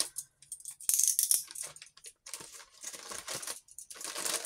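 A small plastic bag crinkling in short bursts as it is handled and cut open with scissors, with a few sharp clicks.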